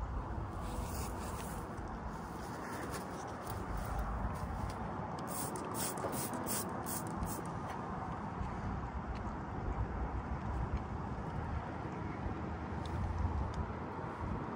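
Steady outdoor background noise with a low rumble. A quick run of short rustling, scraping sounds comes about five to seven seconds in.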